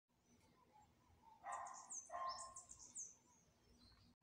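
A short run of faint, high chirps, several quickly falling in pitch and one rising, from about a second and a half in for about a second and a half, over near silence: bird-like calls.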